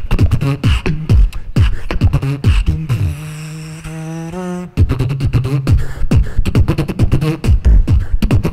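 Beatboxing through a handheld microphone: fast, dense kick- and snare-like mouth percussion. In the middle it breaks into a held, pitched bass note for about a second and a half, which cuts off sharply before the beat comes back in.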